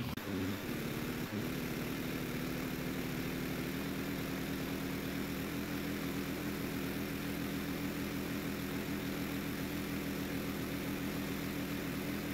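Pressure washer engine running steadily at a constant pitch while a rotary surface cleaner is pushed over wet concrete, with a faint hiss under the hum.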